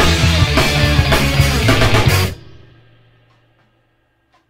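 Tama drum kit played along with a rock band's recording, the drums and band stopping together on a final hit a little over two seconds in. The ring-out then fades away within about a second.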